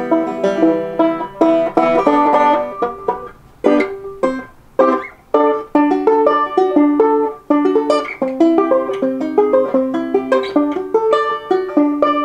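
A Blanton BB-15R five-string resonator banjo played with the fingers: a quick run of picked notes with short breaks about four and five seconds in. It has no tone ring, and its tone is somewhat soft.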